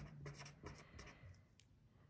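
Faint scratching of a felt-tip pen writing on a paper worksheet: a few short strokes that die away near the end.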